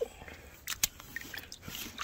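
Faint sloshing of shallow muddy water as a steel rebar drowning rod is moved in it, with two sharp clicks close together a little under a second in.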